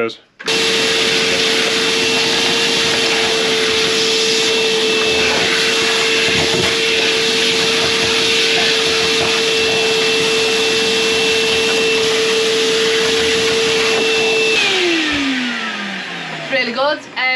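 Hyundai wet-and-dry vacuum cleaner running steadily with a constant motor whine as it sucks debris from between a wooden boat's bilge frames. It switches on about half a second in and is switched off near the end, its pitch falling as the motor winds down.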